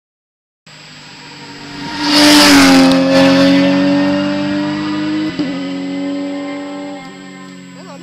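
Porsche 911 GT3 rally car's flat-six engine at high revs as the car passes close by at speed, loudest a couple of seconds in with its pitch dropping as it goes past. A brief break about five seconds in marks a gear change, and the engine note then fades away into the distance.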